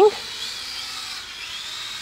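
Small consumer quadcopter drone flying, its propellers and motors giving a steady high whine that wavers slightly in pitch.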